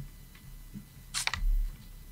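Camera shutter firing a quick burst of three or four sharp clicks about a second in, followed at once by a low thump.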